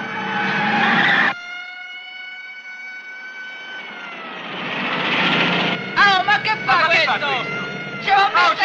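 Car chase on a road: a car's engine and tyre noise swell and cut off abruptly about a second in, then swell again, over a steady high whine. Excited voices follow near the end.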